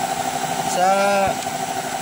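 A steady, even mechanical hum like an idling engine, with a fine regular pulse, running under one short spoken word.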